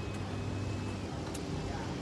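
Steady low rumble of road traffic and street background noise, with no distinct events.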